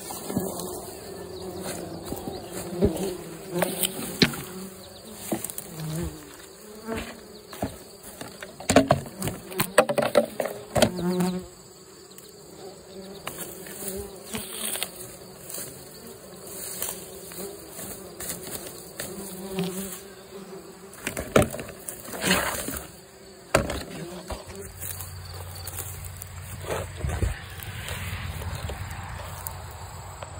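Bumblebees buzzing in a steady, slightly wavering hum, with scattered knocks and rustles of hands working soil and grass.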